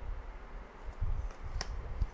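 Quiet handling sounds as tarot cards are moved in the hands: soft low thuds around the first second and one sharp click about one and a half seconds in.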